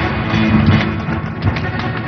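Action-film score with electric guitar in a rock style, playing steadily and densely.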